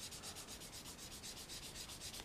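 Sanding pad rubbed quickly back and forth over a small clear plastic model part, a faint, rapid scratching as the nub mark and cloudiness are sanded down.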